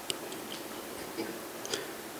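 A few faint, short clicks scattered over a steady hiss.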